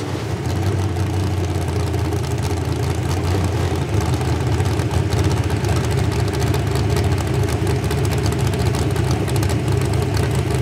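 Pulling truck's small-block V8 idling with a steady, choppy low rumble through open vertical exhaust stacks.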